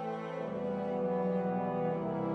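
Orchestral classical music with brass, led by horns, holding long sustained chords. The harmony shifts to a new chord about half a second in.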